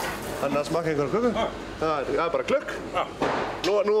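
Men talking in Icelandic.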